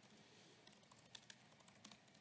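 Faint typing on a laptop keyboard: a quick, irregular run of light key clicks.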